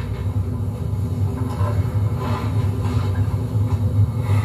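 A steady low rumble with no distinct events, from a television broadcast's soundtrack picked up off the set's speaker.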